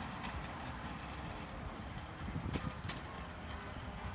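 Loaded shopping cart rolling over parking-lot asphalt, its wheels and wire basket rattling steadily, with a few sharper clatters between two and a half and three seconds in.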